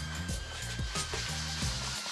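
Background music with a low bass line and a steady beat.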